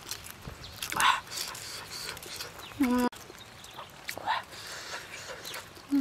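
Eating sounds: small clicks and crackles of a boiled eggshell being peeled by hand, and chewing. A short closed-mouth 'mm' hum comes about three seconds in and again at the end.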